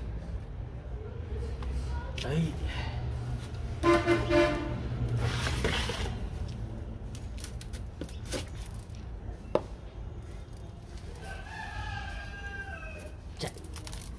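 A rooster crowing in the background, once about four seconds in and again, with a falling tail, later on, over a steady low hum. A few sharp knocks come in between.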